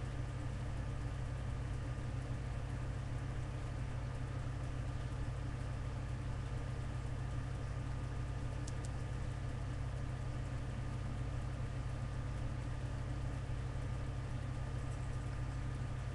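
Steady low hum with an even hiss behind it, unchanging throughout, with one faint tick about nine seconds in.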